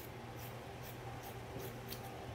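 Scissors cutting through cotton tricoline fabric: a run of faint, quick snips, about three a second.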